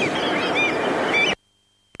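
Seaside sound effect of surf with gulls calling in short rising-and-falling cries, cut off abruptly a little over a second in.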